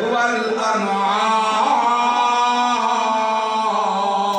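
A man's voice chanting a melodic recitation into a microphone, with long held notes that bend gently up and down.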